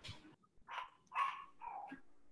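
A dog barking three times in quick succession, the middle bark the loudest.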